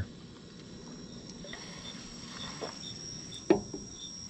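Crickets chirping at night: a steady high trill with a regular run of brief high chirps. One sharp knock comes about three and a half seconds in.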